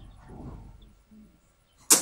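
A quiet pause in a man's speech, holding only faint room tone; his voice comes back sharply right at the end.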